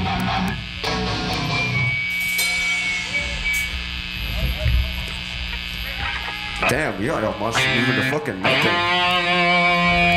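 Live hardcore band at a quieter stretch of a song: electric guitar holding sustained, ringing notes, with the vocalist shouting into the microphone about two-thirds of the way in, then a held guitar chord ringing near the end just before the full band comes back in.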